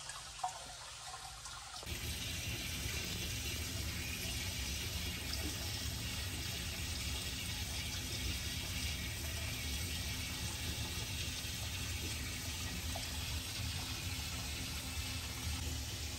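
Water running steadily from hoses into aquarium tanks being topped off, with a low hum underneath. It gets louder about two seconds in and then holds steady.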